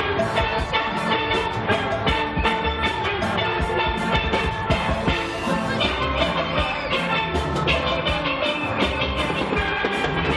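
A steel band of many steel pans struck with mallets, playing a tune together with a steady, even beat.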